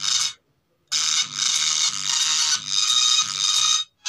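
A song played from a phone through two small 2-inch speakers driven by an amplifier board salvaged from a DTH set-top box, mostly high-pitched with little bass. The music cuts out for about half a second shortly after the start, then resumes, and drops out briefly again at the very end.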